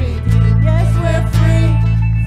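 Live worship band playing: acoustic guitar strumming over a bass that moves to a new note about every second.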